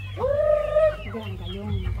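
Chickens calling: one drawn-out, steady-pitched call just under a second long near the start, followed by softer short clucks.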